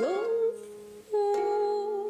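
A woman humming held notes over mandolin accompaniment: her voice slides up into a held note, then about a second in a fresh mandolin chord is struck under another sustained note.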